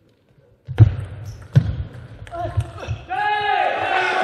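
Table tennis rally: sharp clicks of the celluloid ball off bats and table, with two heavy thuds about one and one and a half seconds in. About three seconds in, a loud drawn-out shout follows, a player's yell at the end of the point.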